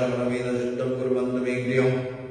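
A man chanting a mantra in one long, held tone on a steady low pitch.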